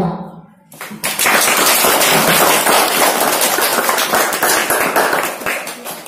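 Audience applauding, starting about a second in and fading near the end.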